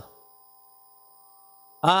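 Faint steady electrical hum made of a few fixed tones, with no other sound over it. A man's voice starts again near the end.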